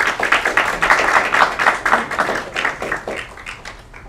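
Audience applauding, a dense patter of many hands clapping that thins out and dies away shortly before the end.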